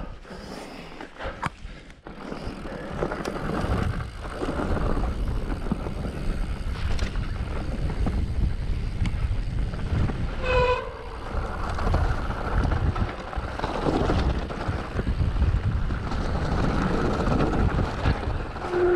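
Orbea Rallon enduro mountain bike riding fast down a rough moorland trail: wind rushing over the helmet-camera microphone, with the tyres and bike rattling over the ground. A short high-pitched squeal about ten and a half seconds in.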